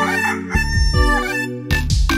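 A rooster's cock-a-doodle-doo crow, used as a cartoon sound effect, heard once near the start over instrumental music.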